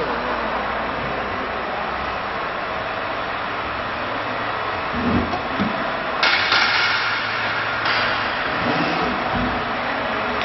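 ATC CNC woodworking router running with a steady machine noise, turning louder and brighter from about six seconds in, with a few dull thumps.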